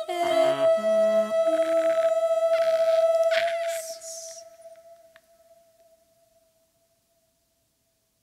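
Unaccompanied female voices: one holds a long, steady high note while other voices slide through lower notes beneath it. About three and a half seconds in there is a short breathy hiss, and the held note then fades away over the next couple of seconds.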